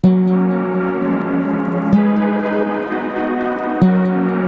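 Logic Pro X stock synth pad, the Airways patch, playing long sustained chords, with a new chord struck about every two seconds.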